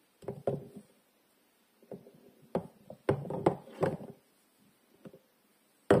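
Hard bars of soap knocking and clacking against one another as they are handled and set down on a pile: a few clusters of sharp taps, the loudest near the end.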